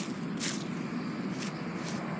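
Footsteps of a person in sneakers walking on grass and dry fallen leaves: about four short scuffs over a steady rustle.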